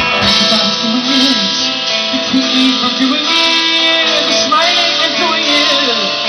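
A live band playing, with guitar to the fore.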